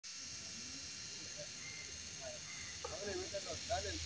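Steady whirring hiss of small electric motors, with a voice coming in about three seconds in.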